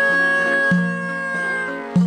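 Epirote folk band playing: a clarinet holds one long high note that sags in pitch near the end, over a low plucked lute note struck about once a second.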